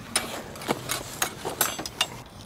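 Wood campfire crackling in a portable fire pit, giving several sharp, irregular pops.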